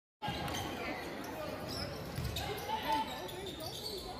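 Live sound of a basketball game on an indoor gym court: the ball bouncing on the hardwood floor amid the voices of players and spectators.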